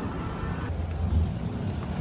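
Low, steady rumble with a faint hiss and no clear events.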